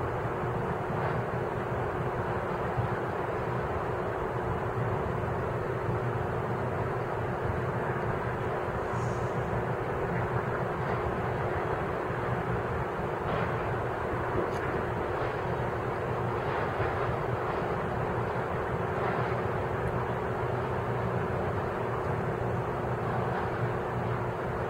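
Heavy diesel machinery, a material handler's engine among it, running steadily as a low hum with a faint constant tone, and a few faint knocks along the way.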